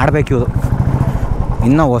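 A 350 cc motorcycle's single-cylinder engine running at low speed with a quick, even beat. A man's voice talks over it at the start and again near the end.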